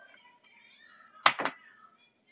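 Two sharp clicks in quick succession, about a quarter second apart, a little past the middle, over a faint background.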